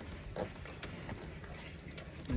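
Faint handling sounds of wiring-harness wires and spade connectors being sorted by hand, with a few soft clicks.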